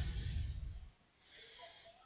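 A man's breathing close to the microphone in a pause between sentences: a soft breath trailing off, then a short quiet breath in about a second later.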